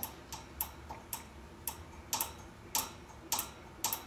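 A run of short, sharp light clicks or taps, irregular at first and then falling into about two a second, some of them doubled, over a quiet room.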